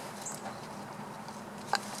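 Faint rustling and small scratching ticks of fingers touching chunky potting soil, over a low steady hiss and hum.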